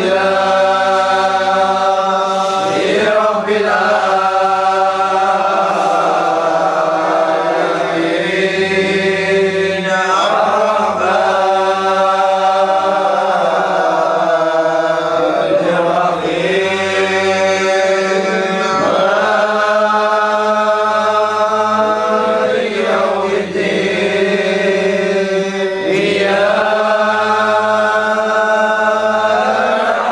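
A group of men chanting a Qadiriyah dhikr together, in long, drawn-out melodic phrases that break off and begin again every few seconds.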